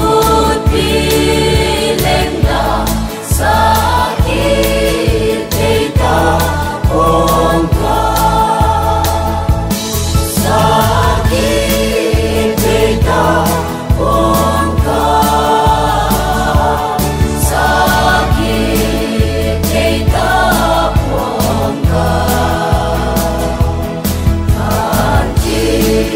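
Mixed choir of men and women singing a gospel song over an instrumental backing with a steady low beat.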